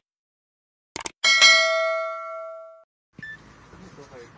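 Subscribe-button sound effect: a couple of quick mouse clicks, then a single bell ding that rings out and fades over about a second and a half. Faint room sound follows near the end.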